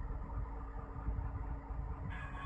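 Engine and tyre rumble heard inside a vehicle's cab while driving on a rough gravel road: a steady low rumble with a faint constant hum.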